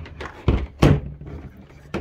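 Two dull knocks about a third of a second apart, the second louder, from an Ethernet cable and a small network switch being handled on a tabletop.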